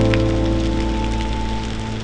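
Heavy rain falling, heard over background music of steady held chords.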